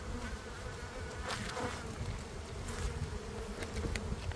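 Honeybees buzzing in a steady low drone around a hive opened for harvest; the colony is agitated and defensive.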